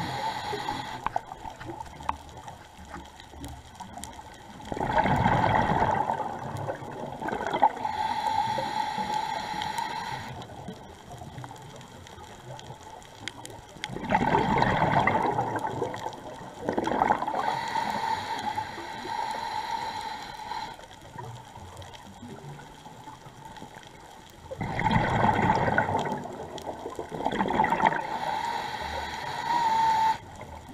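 A scuba diver breathing underwater through a regulator: three loud rushes of exhaled bubbles about ten seconds apart, about a second in from each breath's start, each followed by a few seconds of a thin steady tone.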